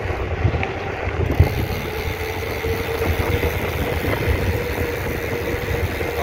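Mountain bike rolling fast down a paved road: tyre noise on the tarmac and wind rumble on the camera microphone, with a steady hum running through it and a single bump about a second and a half in.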